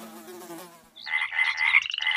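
The last notes of the music fade out, then about a second in a cartoon frog croaking sound effect begins: a high, rapidly pulsing croak.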